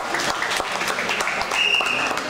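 Spectators applauding, many quick irregular hand claps, as the winning wrestler's arm is raised. A brief high steady tone sounds near the end.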